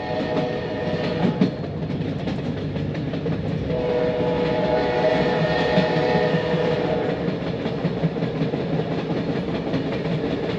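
Sleeper train running at speed, heard from inside the carriage: a steady rumble of wheels on track. A drawn-out tone rises above it for about three seconds in the middle.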